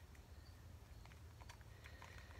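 Near silence: workshop room tone with a steady low hum and a few faint ticks.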